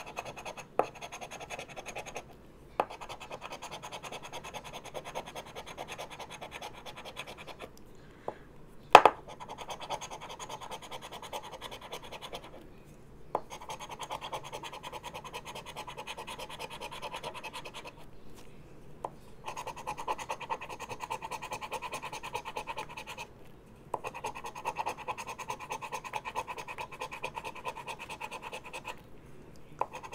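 Scratch-off lottery ticket being scratched briskly with the edge of a hard plastic fidget toy, a dry rasping that runs for several seconds at a time with short pauses between. A few sharp clicks, the loudest about nine seconds in.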